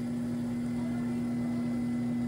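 Electric pottery wheel running at a steady speed: a constant motor hum that holds one unchanging pitch, with a faint high whine above it.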